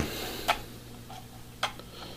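Lens dials of an American Optical 11320 phoropter being turned and clicking into their detent stops: two sharp clicks about a second apart, with fainter ticks between, the adjustments clicking into place cleanly.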